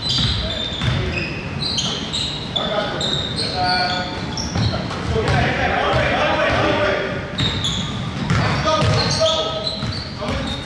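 A basketball bouncing repeatedly on a hardwood gym floor as it is dribbled, with short high sneaker squeaks, echoing in a large gym.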